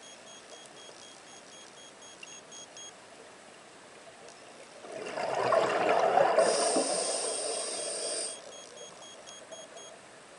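A scuba diver's exhalation through the regulator, the rising bubbles rumbling and hissing for about three and a half seconds, starting about five seconds in.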